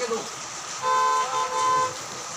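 A goods truck's horn sounding one steady honk of several tones together, lasting about a second.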